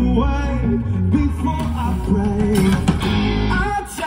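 Live rock band playing loudly: distorted electric guitar, bass guitar and drums, with a male voice singing. The low end thins out abruptly right at the end.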